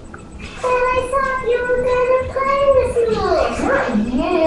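A young, high-pitched voice holds one long, drawn-out vocal note for close to three seconds, then lets its pitch fall near the end, like a sung or hummed sound rather than words.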